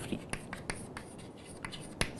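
Chalk writing on a chalkboard: a quiet run of short scratches and taps as a few words are written.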